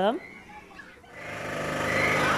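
Children's spinning amusement ride running: a steady mechanical hum fades up about a second in, with faint voices over it.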